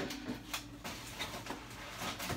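A few light knocks and rustles as groceries are set onto the shelves of an open refrigerator.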